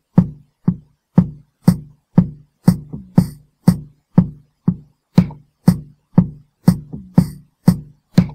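Programmed drum loop from the DR-Fusion 2 software drum instrument playing at 120 bpm. A kick, snare and hand-clap pattern gives a hit about every half second, repeating bar after bar.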